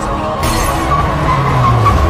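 A car's tyres squealing as it slides through a turn, with its engine note dropping near the end, under loud film-score music.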